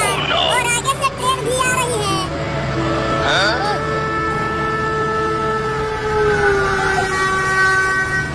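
Train horn sounding one long, steady chord through the second half, dipping slightly in pitch partway through, over background music; voices and music fill the first half.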